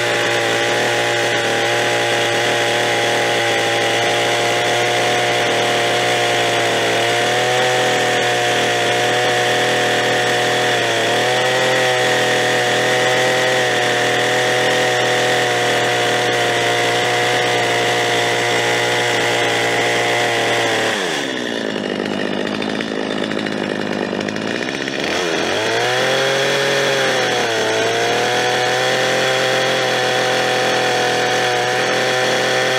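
Stihl two-stroke chainsaw running at full throttle as it cuts into a log, its pitch dipping slightly twice. About two-thirds of the way through, the throttle is let off and the engine drops toward idle for about four seconds, then revs back up to cutting speed.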